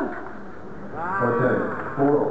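A man's drawn-out vocal cry, rising and then falling in pitch and lasting just under a second, starting about a second in. It comes at the end of a tennis point on a clay court, with a shorter vocal sound right after it.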